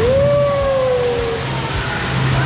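One long howl-like voice call, a single held 'ooo' that rises quickly at the start and then slides slowly down in pitch, lasting about a second and a half.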